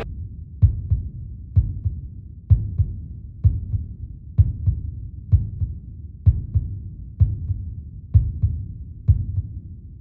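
Heartbeat sound effect: low, heavy double thumps repeating a little faster than once a second, each strong beat followed closely by a softer one.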